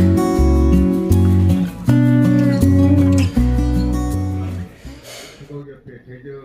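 Background music led by a strummed guitar over bass notes, fading out about five seconds in.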